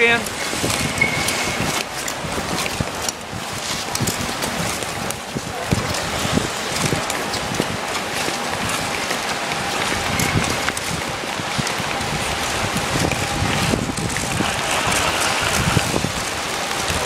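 Ice skate blades scraping and gliding over rink ice, a continuous hiss, with the voices of other skaters in the background.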